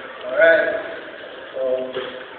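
A man's voice in two short bursts, about half a second in and again near the end, with no drumming.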